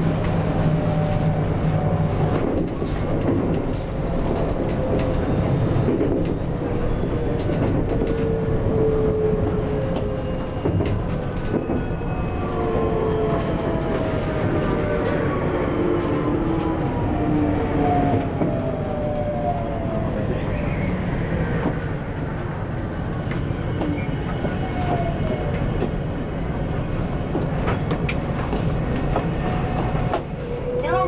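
JR West 521 series electric train braking into a station and slowing to a stop: the traction motor whine falls in pitch in several descending tones over about twenty seconds, over a steady wheel-on-rail rumble.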